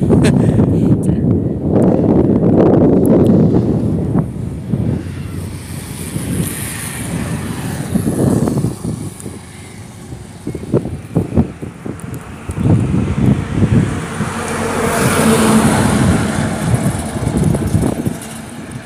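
Wind buffeting the phone's microphone in gusts, with road traffic; a vehicle's sound swells near the end.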